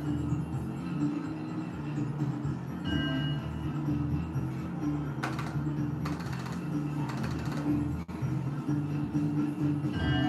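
Novoline slot machine playing its free-game music with a steady low pulse as the reels spin and stop, with a short chime jingle about three seconds in and brief hissing sparkle effects around five to seven seconds in.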